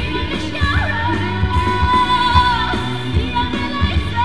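A woman singing a pop song into a microphone over amplified backing music with a steady beat and bass line, holding a long note through the middle.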